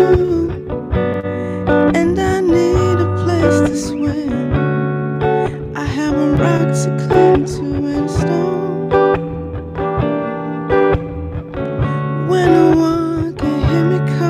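Acoustic guitar strummed in a steady rhythm, with a voice singing over it.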